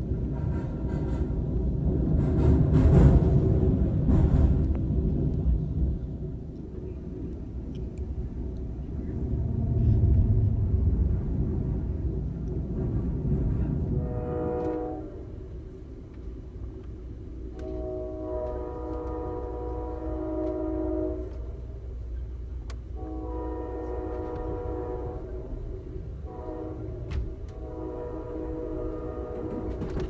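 Passenger train running, a loud rumble through the first half. From about halfway, the locomotive horn sounds a short blast and then the long, long, short, long pattern of a grade-crossing warning, heard from inside the passenger car over the running noise.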